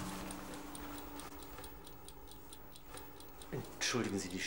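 Steady, evenly spaced ticking, like a clock, over a faint low hum in a quiet room.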